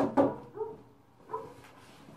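A dog barking: two loud, sharp barks close together right at the start, then a few fainter short barks.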